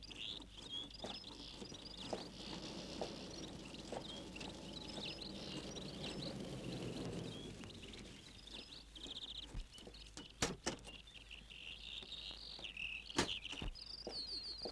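Small birds chirping and twittering throughout. A low rumble swells in the middle and fades, and a few sharp knocks come near the end.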